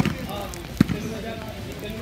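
Voices of several people talking in the background, with two sharp thumps: one at the start and a louder one just under a second later.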